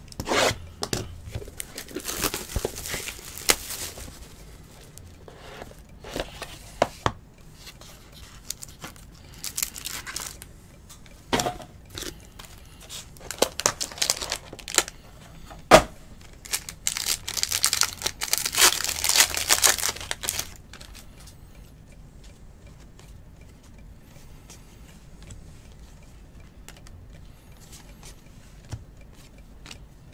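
Sealed trading-card packs being torn open, their plastic wrappers crinkling and ripping in repeated bursts over the first twenty seconds. Then a quieter stretch of faint clicks as the cards are handled.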